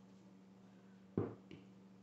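A sharp click about a second in, followed by a fainter click a moment later, over a faint steady hum.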